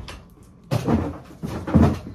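Two sudden thumps with a clatter, about a second apart, as groceries are put away in kitchen cupboards; the second is the louder.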